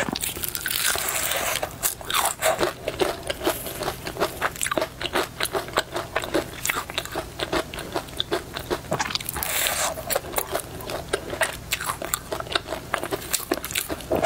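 Close-miked biting and chewing of crispy fried chicken: a dense run of sharp crunches from the crackling coated skin, with longer crunching stretches about a second in and again near ten seconds.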